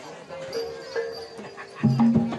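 Gamelan bronze metallophones ringing a few sustained notes, then a loud low drum stroke near the end as the ensemble starts to play.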